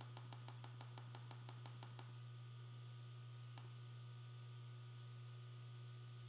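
Faint typing on a laptop keyboard: a quick run of key clicks, about eight a second, for the first two seconds, then a single click a little past halfway. A steady low hum sits under the clicks.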